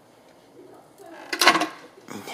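A short, loud metallic clatter about a second and a half in, from a hand knocking against the sheet-metal housing of x-ray equipment, after a quiet first second.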